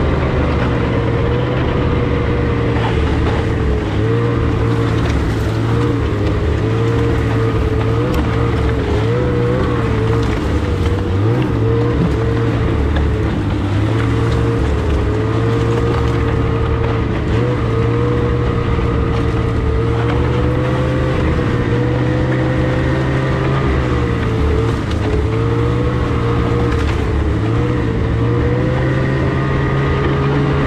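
Snowmobile engine running steadily while being ridden along a trail, its pitch rising and falling slightly with the throttle.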